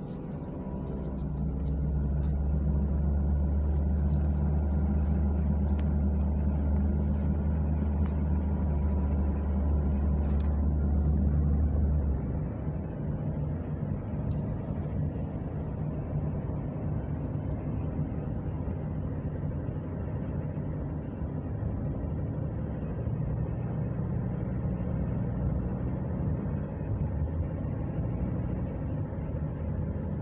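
Car driving, heard from inside the cabin: a steady low engine and road drone that swells about a second in and drops back to a lower, even hum about twelve seconds in.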